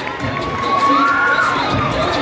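Audience cheering and shouting, many high-pitched voices screaming at once, over a regular low beat about twice a second.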